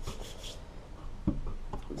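Hands rubbing together in a few quick strokes, then a short dull thump about a second and a half in.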